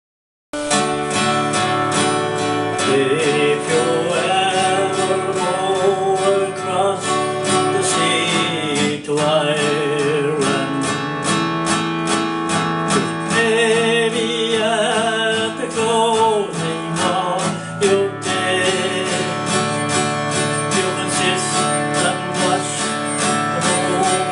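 Acoustic guitar picking and strumming a slow song intro, starting about half a second in. A sustained melody line with vibrato runs over the guitar at times.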